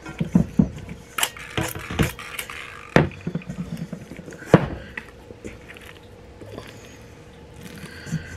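Hands working bread dough in a stainless steel mixing bowl: a string of sharp knocks and clinks as the metal bowl is turned and handled, the loudest about four and a half seconds in, then quieter handling.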